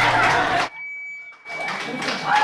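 A room full of voices is cut off abruptly less than a second in. About a second of near-empty sound follows, holding a single steady high-pitched beep, and then the voices return.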